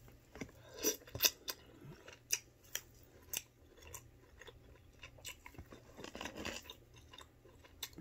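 Close-up eating sounds from a seafood boil eaten by hand: a scatter of short sharp cracks and clicks from crab-leg shells being picked apart, with chewing and lip smacks.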